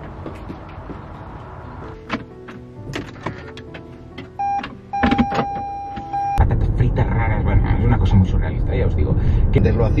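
Car cabin while driving: a steady low road and engine rumble starts abruptly about six seconds in, with a podcast voice playing over the car's speakers. Before that come scattered clicks and knocks and a held electronic tone.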